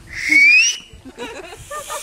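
A man whistling with his hand at his mouth: one loud, breathy whistle rising in pitch and lasting under a second, followed by laughter.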